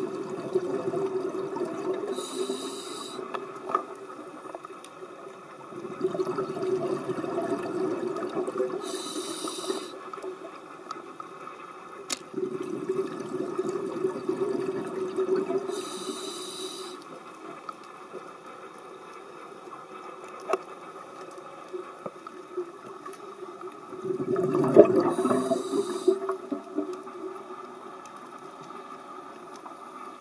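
A scuba diver breathing through a regulator underwater. Each inhalation is a short hiss, and each exhalation is a rush of bubbles, about four breaths in all, one roughly every seven seconds.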